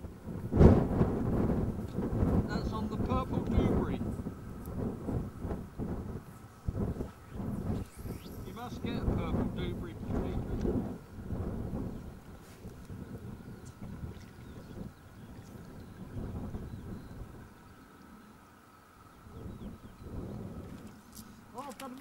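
Wind buffeting a camcorder microphone: an uneven low rumble that swells and drops in gusts, loudest about half a second in and easing toward the end.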